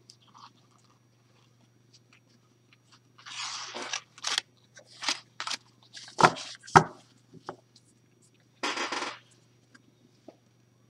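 Oracle cards being handled, starting about three seconds in: short rustling slides of card against card, with sharp clicks and two sharp taps about six seconds in, then one more rustle near the end as the deck is gathered.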